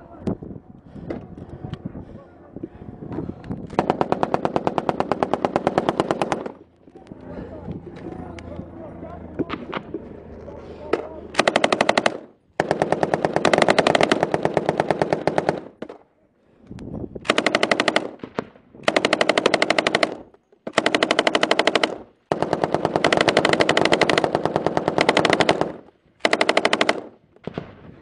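Belt-fed machine gun firing long bursts of automatic fire close to the microphone. About eight bursts, each one to three seconds long with short pauses between them. The first begins about four seconds in, and the others come in quick succession in the second half.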